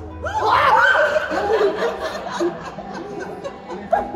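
A sudden startled outburst of high-pitched voices about a third of a second in, turning into laughter, over background music.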